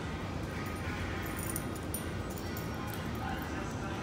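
Steady room hum with faint background music and distant voices.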